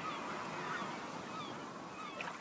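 Birds calling in short chirping glides over a steady background hiss, the whole slowly growing quieter.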